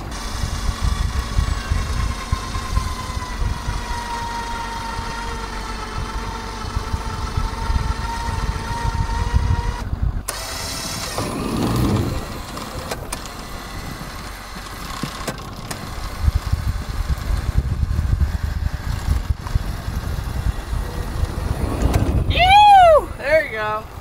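Electric winch motor whining at a steady pitch that sags slightly as it takes up the load, over a low wind rumble; it stops about ten seconds in. After that a low rumble as the off-road golf cart is driven out of the snow on the winch line, with a brief shout near the end.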